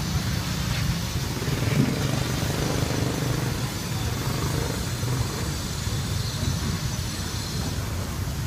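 A steady, low engine rumble.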